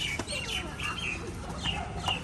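Small birds chirping: a busy, overlapping run of short high chirps, several a second, over a steady low background rumble.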